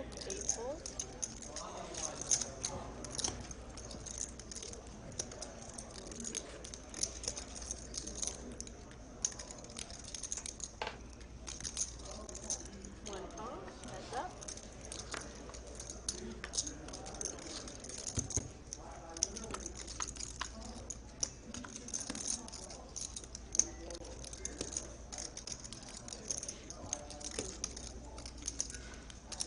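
Clay poker chips clicking and clacking as players handle and stack them at the table, a steady run of short sharp clicks, with quiet table chatter underneath.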